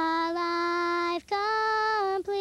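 A high solo voice singing a slow tribute song. It holds one long note for about a second, then steps up to a second, higher held note.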